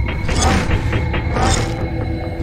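Sound-designed mechanical effects for an animated intro: dense clicking and ratcheting machinery over a low rumble, with a hissing swell about once a second.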